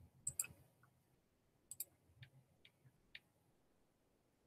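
Faint sharp clicks: a quick pair near the start, another pair about a second and a half later, then three lighter ticks over the next second or so, against near silence.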